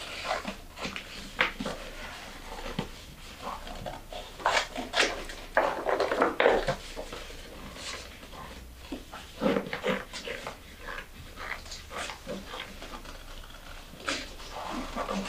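Scissors cutting large sheets of coloured paper, with the paper rustling and crackling as it is handled and turned. The snips and crackles come irregularly and are loudest in the middle.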